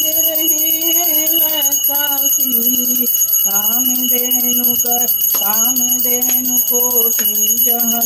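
A woman's voice singing a devotional Shiva aarti. Over it, a small brass hand bell is rung continuously, a steady high ringing.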